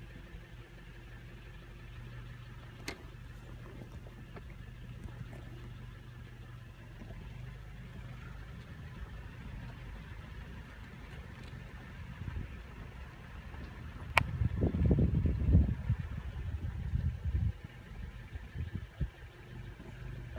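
Car engine idling with a steady low hum, heard from inside the cabin. About fourteen seconds in there is a sharp click, then a few seconds of louder low rumbling as the car moves.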